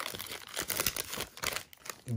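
Foil wrapper of a 1997 Upper Deck Collector's Choice football card pack being torn open and crinkled by hand: a dense crackle of small clicks that thins out near the end.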